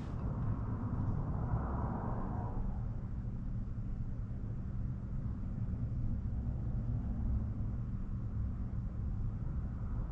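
Steady low background hum and rumble, with a faint, brief scratchy sound about a second or two in.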